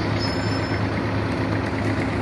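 Boom truck's engine running steadily at idle, a low even drone.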